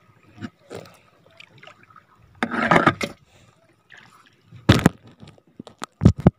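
Shallow seawater splashing and sloshing in irregular bursts, the longest and loudest about two and a half seconds in, a sharp splash near five seconds, with small drips and clicks between.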